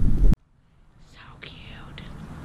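A brief loud rumble of wind on the microphone that cuts off abruptly, followed by a quiet stretch with a few faint, soft high-pitched sounds.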